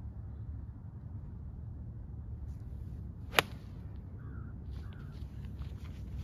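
An 8 iron striking a golf ball once, a single sharp crack about three and a half seconds in, then quick footsteps on dry grass as the golfer runs after the shot, over a steady low rumble.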